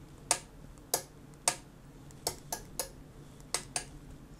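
Relays inside a Gosund smart Wi-Fi power strip clicking as its sockets are switched on and off from the phone app: about eight sharp clicks at uneven spacing, some in quick succession.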